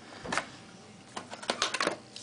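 Small clicks and taps from a late-2008 aluminium unibody MacBook's underside as its access-door latch is flipped open and the door lifted off: one click about a third of a second in, then a quick run of about half a dozen clicks in the second half.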